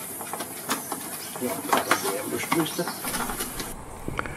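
Cardboard box being opened by hand, its flaps rustling and scraping in a string of small clicks and scuffs over a hiss of cardboard rubbing on cardboard.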